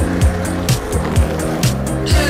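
Background music, an electronic pop track with a kick drum about twice a second over steady bass and synth lines, playing loudly and evenly.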